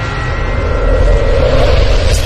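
Sound effect of a channel logo intro animation: a loud rushing noise over a deep rumble, slowly building in level.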